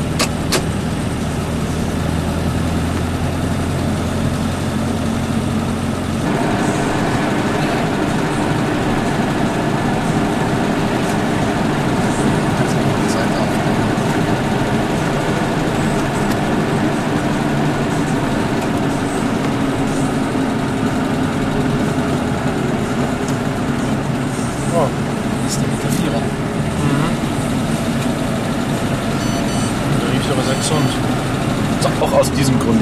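Citroën 2CV's air-cooled flat-twin engine running steadily on the drive; about six seconds in, its sound changes from a steady low hum to a rougher, busier running.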